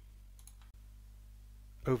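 A few faint computer clicks about half a second in, over a low steady hum. A man's voice starts speaking right at the end.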